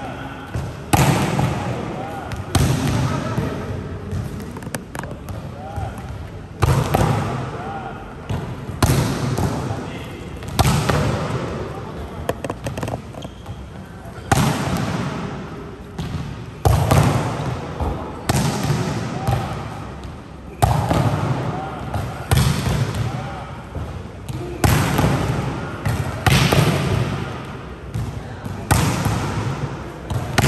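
Volleyballs being spiked and slapping onto the court floor over and over, a sharp smack about every two seconds, each ringing out in the echo of a big gym hall. Players' voices and shoe squeaks come and go between the hits.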